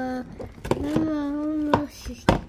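A child's voice holding two long sung notes, each about a second, over a few sharp clicks of a spoon against a plastic bowl as wet plaster is stirred.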